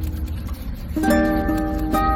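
Background music played on a plucked string instrument, a fresh run of notes plucked about a second in.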